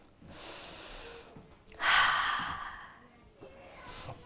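A woman breathing deeply while recovering from exercise: a faint breath in, then a louder, long breath out starting about two seconds in and fading away.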